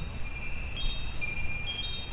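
Chimes ringing: several high, sustained tones at different pitches that sound one after another at scattered moments, over a low rumble.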